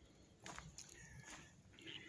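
Near silence: faint outdoor background with a few soft clicks.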